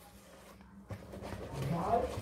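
Spatula stirring milk into corn-cake batter in a bowl, almost silent at first and growing louder through the second half, with a brief low voice sound near the end.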